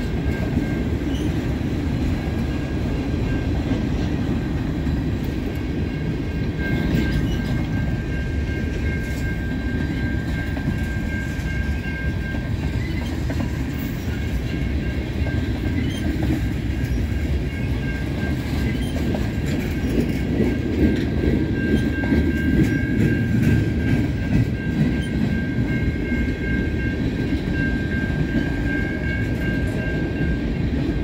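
Freight cars rolling slowly past: a steady low rumble of steel wheels on rail, with faint clicking and a thin, steady high-pitched wheel squeal running underneath. The rumble grows a little louder about two-thirds of the way through.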